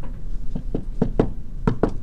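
A quick, irregular series of about six short, sharp taps.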